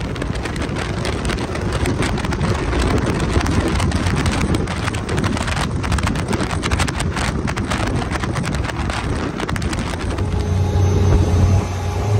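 Can-Am Maverick side-by-side driving fast on a rough dirt track: engine running under heavy wind buffeting on the microphone, with many short clicks and rattles. Near the end a steadier low engine drone comes through.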